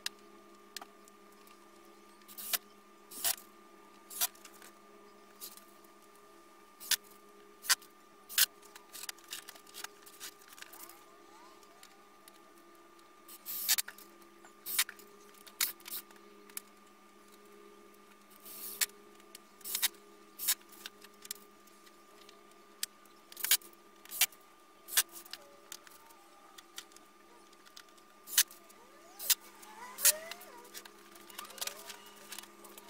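Sharp metallic clicks and clinks of steel door hinges and screws being handled, with a few short bursts of a cordless Ryobi driver driving hinge screws into OSB. A steady hum sits underneath.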